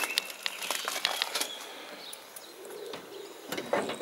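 Quiet outdoor background with a few faint, short ticks and a soft knock about three seconds in.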